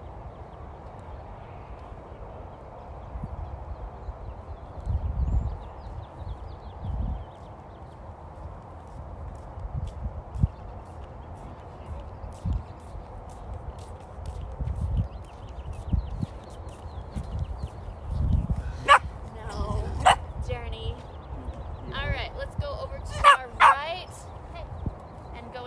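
A dog barking and yipping in short calls several times near the end, over low, irregular bumps and rumbles earlier on.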